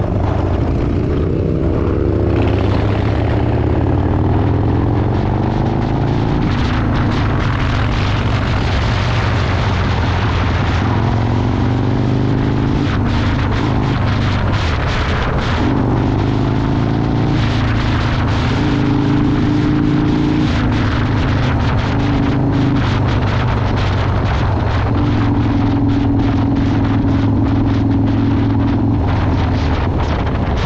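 Harley-Davidson Dyna Low Rider's air-cooled V-twin engine running under way, its pitch climbing several times as it pulls through the gears and holding steady near the end. Wind buffets the microphone throughout.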